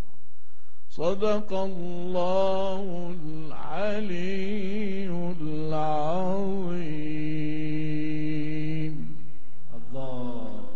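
A man reciting the Quran in a melodic chant: one long ornamented phrase that begins about a second in, winds through wavering runs of notes, and ends on a long held note shortly before the end.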